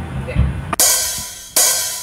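Two cymbal crashes, about a second in and again near the end, each left to ring and fade over the dying tail of an electric bass and guitar note, as a small rock band pauses before coming back in.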